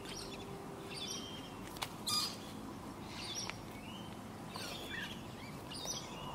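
Birds chirping on and off, with a few faint clicks and a short, slightly louder burst about two seconds in.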